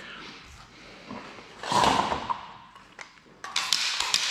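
Handling at a butcher's cutting table: a brief scraping swish about two seconds in, then a few light clicks and taps near the end as tools are set down and picked up.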